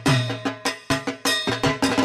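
Rhythmic percussion music: sharp metallic, bell-like strikes about three to four a second over a sustained low drum tone.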